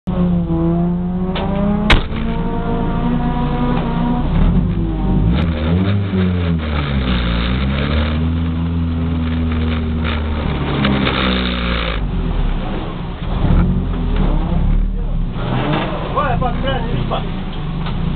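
A VW Golf Mk2 turbo's engine heard from inside the cabin, running steadily and rising and falling in revs for several seconds at a time. A sharp click comes about two seconds in.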